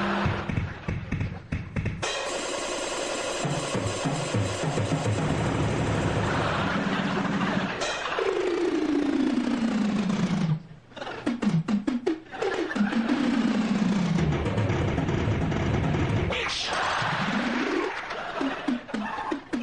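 Drum kit playing rolls and fills with snare, bass drum and cymbals. It breaks off briefly about ten seconds in, and the second half carries three long sweeps falling in pitch.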